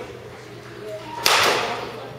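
A baseball bat striking a pitched ball in a batting cage: one sharp crack about a second and a quarter in, with a short ringing tail.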